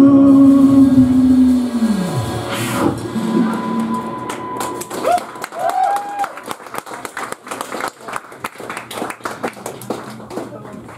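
A live band's song ends on a held final note that slides down in pitch about two seconds in, then audience applause and cheering with a couple of whistles fill the rest.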